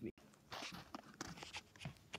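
Handling noise of a phone camera being picked up and carried: irregular soft knocks, clicks and rustles, with possible footsteps.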